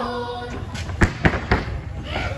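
Naga folk dancers chanting a held note, then a run of sharp thumps, about four in a second, from their stamping on the stage.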